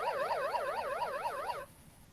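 Wordwall quiz game's correct-answer sound effect: a rapidly warbling, siren-like tone, about five wobbles a second, that cuts off shortly before the end.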